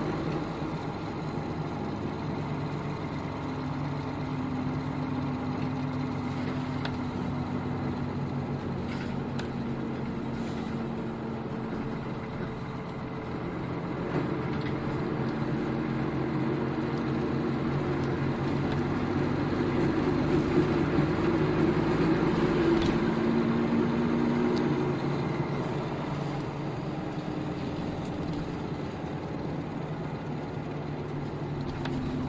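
Nissan Diesel KL-UA452KAN city bus running along, its diesel engine note shifting in pitch as it drives; the engine pulls harder and louder from about halfway through, then eases off near the end.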